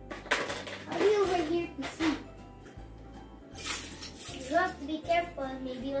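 Plastic Lego bricks clattering as they are dropped by hand into a plastic storage bin, in several short rattling bursts, with background music under them.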